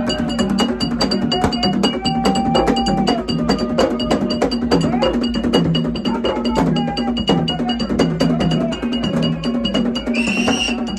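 Ensemble of tall hand drums playing a quick, steady rhythm, with a metal bell-like ringing struck in time and voices chanting over the drums.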